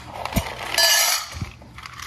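Dry kibble poured from a plastic container into a stainless steel dog bowl: a rattle of pellets hitting the ringing metal for about half a second in the middle, with a dull thud shortly before and another after.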